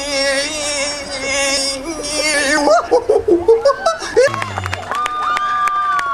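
A man hollering into a microphone: one long held note at a steady pitch for about two and a half seconds, followed by shorter broken vocal sounds. Near the end a high steady tone holds for about a second and a half.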